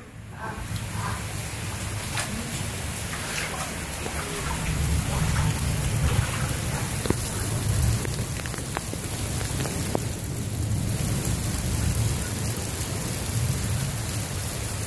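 Heavy rain pouring steadily in a thunderstorm, with a low rumble of thunder underneath that swells from about four seconds in. A few sharp drip ticks sound over the rain.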